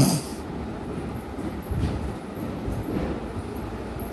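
Rustling and handling noise of a silk saree being moved and unfolded by hand close to the microphone, an irregular, steady rustle with low rumble. A brief sharp sound comes at the very start.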